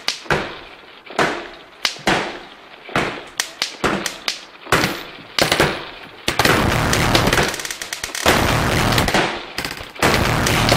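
Drum kit being played. It starts with single heavy hits that ring out, spaced irregularly up to about a second apart. From about six seconds in it turns into a dense, continuous beat, with cymbals ringing over low drums.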